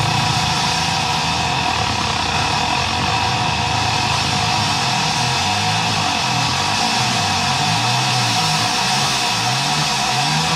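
Live rock band mid-song, led by an electric keyboard holding steady sustained tones. From about halfway in, a low part wavers up and down in pitch underneath.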